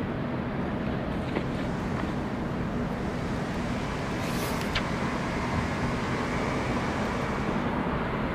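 Steady rumbling background noise at an even level, with a few faint clicks and a short hiss about four and a half seconds in.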